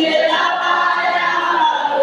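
A congregation singing together in long, held notes.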